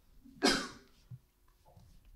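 A man coughs once, briefly, about half a second in.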